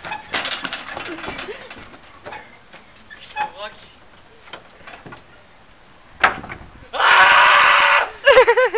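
A single sharp crack of a wooden oar striking, about six seconds in, followed by a loud, harsh burst of noise lasting about a second.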